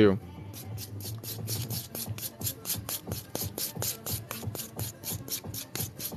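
Purple nail buffer rubbed quickly back and forth over the surface of a sculpted gel nail, a rapid, even rasping of about five short strokes a second, buffing off a marker dot.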